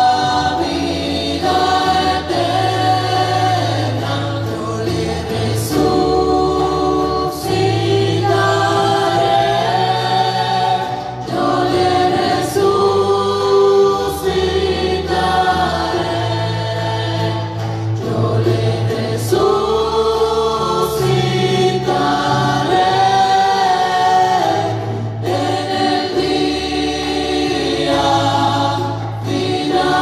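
A church choir singing the offertory hymn with instrumental accompaniment, over held bass notes that change every second or two.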